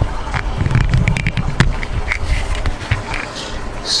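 A wooden Rubik's cube being handled and worked apart to take a piece out: rumbling handling noise close to the microphone, a quick run of small clicks about a second in and a sharper click soon after.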